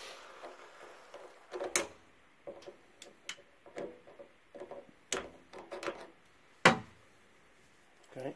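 Flathead screwdriver turning the slotted brass drain valve of an electric water heater to open it and let pressure out into the hose: scattered metal clicks and short scrapes, the sharpest click about two-thirds of the way through.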